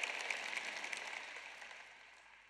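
Large audience applauding, the clapping dying away gradually.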